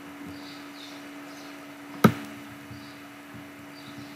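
One sharp computer-mouse click about halfway through, over a steady low electrical hum and faint room noise.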